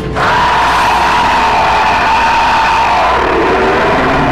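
Horror-film sound design: a sudden, loud, sustained wall of crowd-like screaming noise. A high tone holds through it and sinks lower near the end.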